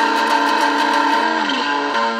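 Electric guitar holding a ringing chord for most of the two seconds, then sliding down in pitch near the end into the next notes.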